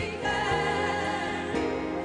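Gospel song sung by a group of women singers with instrumental accompaniment, the voices holding and sliding between sustained notes.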